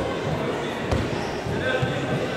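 Dull thuds from a taekwondo bout on foam mats, with one sharp smack about a second in. Voices murmur and echo in the large sports hall.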